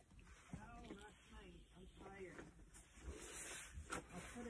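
Near silence, with faint distant voices in the background.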